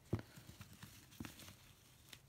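Faint handling noises from hands working the ribbon and camellia decoration on a gift box: a sharp tap just after the start, another a little past a second in, and small ticks between.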